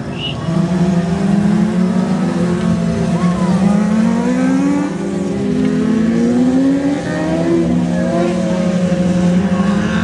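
A pack of winged 600cc micro sprint cars running around a dirt oval in formation before the start. Their engines hold a steady drone, with several revs rising in pitch as drivers get on the throttle.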